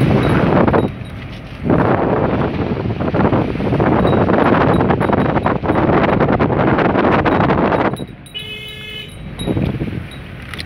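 Loud wind rush on the phone's microphone mixed with the noise of a moving vehicle. The rush drops briefly about a second in, then falls away near the end, when a short steady tone sounds for under a second.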